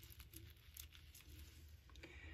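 Near silence, with faint light ticks and rustles from hands handling the lace appliqué and frames.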